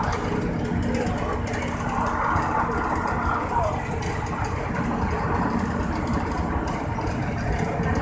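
Steady low rumble of tyre and engine noise heard from inside a vehicle travelling at speed on a highway.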